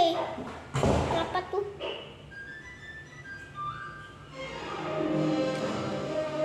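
Television programme soundtrack: a voice and a thud in the first two seconds, a few thin rising tones, then music with sustained notes from about four seconds in.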